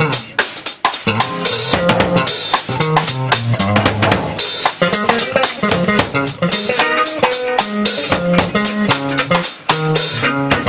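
Drum kit and six-string electric bass playing a funk-jazz groove live: busy snare, rimshot and bass-drum strokes with cymbal crashes over a moving bass line.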